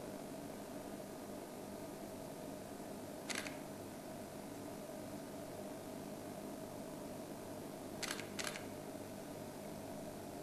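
Steady low hum with a faint hiss, broken by three short clicks: one about a third of the way through and two in quick succession near the end.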